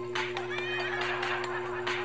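Background music with a steady beat. About half a second in, a short high, wavering cry, like an animal call, is laid over it.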